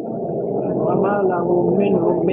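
A man chanting Quranic verses in a drawn-out melodic voice, holding one long note through the second half. The sound is thin and muffled, with no highs.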